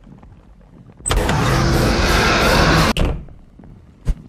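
A loud rushing noise starts suddenly about a second in, holds steady for about two seconds, then cuts off sharply and fades.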